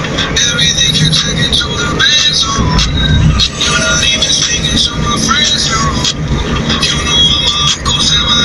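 Car driving along a road, heard from inside the cabin: a steady low engine and road rumble, with a song with a singing voice playing over it on the car's sound system.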